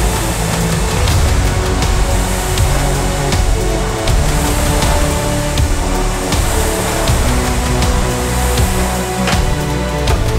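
Background music track with sustained chords and a steady pulse; no words are spoken.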